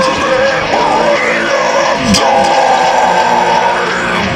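Heavy rock music continuing without clear lyrics, with a yelled vocal over the dense, steady band sound.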